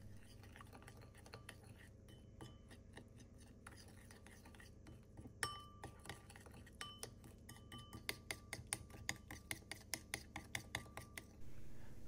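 Metal teaspoon stirring a thick paste of ground linden fruit, sugar and melted oil in a ceramic bowl, clinking against the bowl. The clinks are scattered at first, then quicken into a steady run of about four a second in the last few seconds before stopping.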